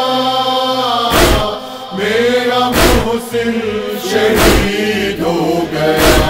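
Noha interlude: a chorus of voices holding a slow, wordless chanted line, with a heavy beat about every one and a half seconds.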